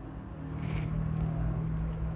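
A vehicle engine's low, steady hum, growing a little louder through the middle and easing off near the end.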